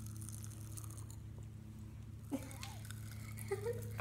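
Pop Rocks popping candy crackling and fizzing in a mouth: a faint, dense crackle of tiny pops that thins out after about a second. A brief rustle follows a little past two seconds in.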